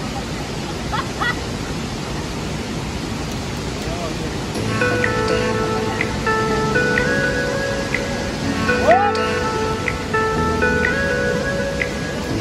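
A steady rushing hiss, then background music with sustained, slowly changing chord tones entering about four and a half seconds in.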